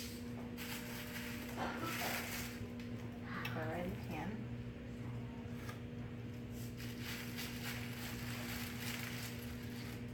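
Salmon fillets sizzling in a hot stainless steel frying pan with a little coconut oil, a hiss that swells and fades as the fillets are laid in with metal tongs. A steady electrical hum runs underneath.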